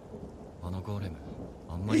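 Anime soundtrack playing quietly: a man's voice speaking low and softly over a low rumble. Another man's voice begins near the end.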